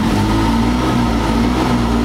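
Can-Am Maverick X3's three-cylinder engine running in park, its note turning uneven and choppy from the start as the launch control begins cutting cylinders, a deliberate misfire.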